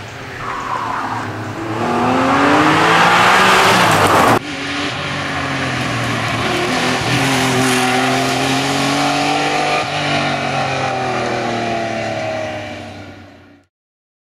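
Porsche 911 SC's air-cooled flat-six engine at racing revs, loud and rising and falling in pitch as the car comes through a chicane. The sound breaks off abruptly about four seconds in and picks up again with the engine pulling hard, a gear change about ten seconds in, then fades out just before the end.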